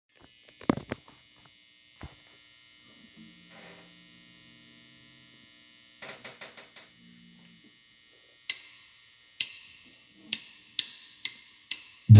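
Knocks and rattles of a phone being handled and set down, then a faint steady electrical hum. From about two-thirds of the way in come six sharp taps with short ringing tails, coming closer together.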